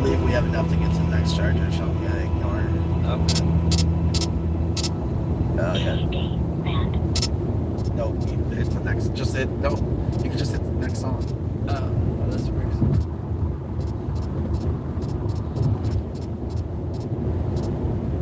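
Steady road and tyre rumble inside a car cruising at highway speed. Held musical tones fade out over the first five or six seconds, and short sharp ticks come and go throughout.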